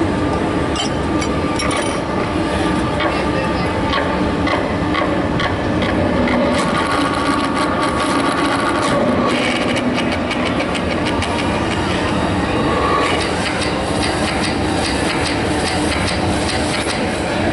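Electronic dance score played over loudspeakers: a loud, unbroken, dense grinding and rattling noise texture peppered with clicks, with faint held tones underneath.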